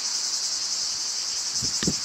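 A dense, steady, high-pitched chorus of singing insects, with a few soft low knocks near the end.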